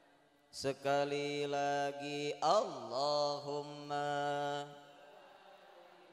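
A man's voice chanting an Islamic invocation through a microphone and PA, in long held melodic notes with a wavering, ornamented glide about halfway through. It starts about half a second in and stops at about five seconds.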